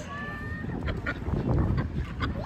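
Ducks quacking in a scatter of short calls. A brief steady high note sounds at the start.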